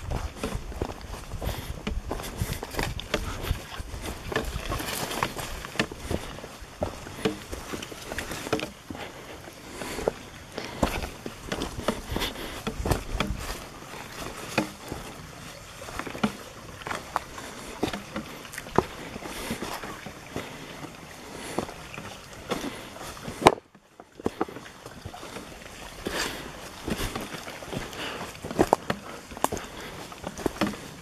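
Footsteps of a hiker walking a rough forest trail, with irregular crunches and knocks and leaves and brush swishing past. One sharp knock is followed by a brief cut in the sound about three-quarters of the way through.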